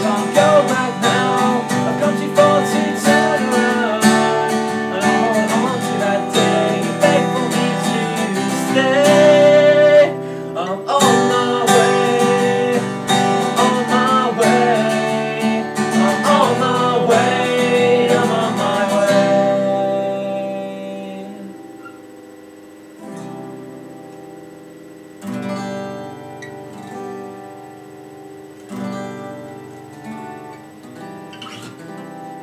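Two acoustic guitars strummed together with a man singing over them. About 19 seconds in, the full strumming stops and the guitars carry on more quietly with sparse, ringing chords.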